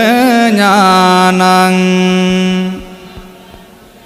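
A Buddhist monk's voice chanting a Pali verse, the pitch wavering through a few turns and then held as one long steady note that ends about three seconds in. A few faint clicks follow.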